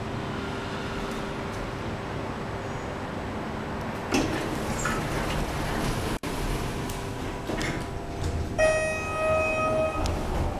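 Inside a Schindler 330A hydraulic elevator cab: a steady mechanical hum, a sharp clunk about four seconds in typical of the doors sliding shut, and a single held electronic tone for about a second and a half near the end.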